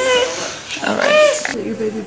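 Newborn baby crying in short wails that rise and fall, one at the start and another about a second in; a lower voice follows near the end.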